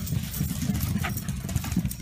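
Several corgis running across a floor toward the camera, their paws making an uneven low rumble of thuds.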